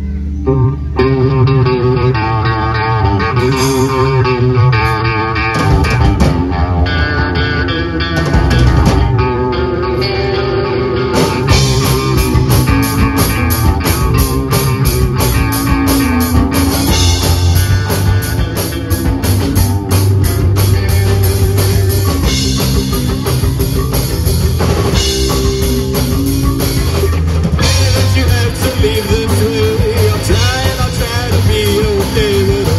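A live three-piece rock band of electric guitars and drum kit playing a song. It opens as a guitar-led intro, and about eleven seconds in the full drum kit comes in with cymbals, and the band plays on at full volume.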